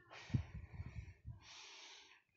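A person breathing close to a phone's microphone, with a few soft low puffs against the mic in the first second.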